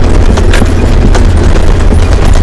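Nissan Patrol 4WD climbing a steep rocky dirt track: a loud, steady low rumble of engine and drivetrain on the mic, with a few sharp knocks as the tyres and suspension go over rocks.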